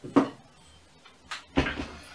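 A few knocks and a clatter from someone moving about off camera: a sharp knock just after the start, a smaller one about a second later, and a longer clatter shortly before the end.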